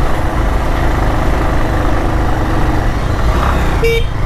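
Motorcycle engine running steadily under the rider as the bike climbs a narrow village lane. A brief high beep comes near the end.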